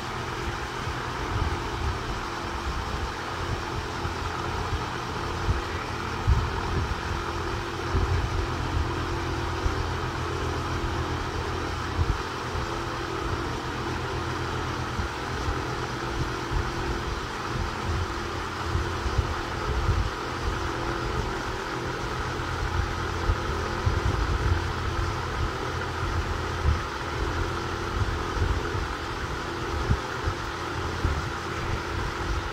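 A steady mechanical hum with a faint held tone runs throughout, under uneven low rumbling.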